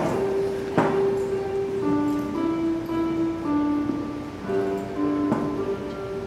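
Electronic keyboard playing a slow line of clean, held notes, with a few soft knocks in between.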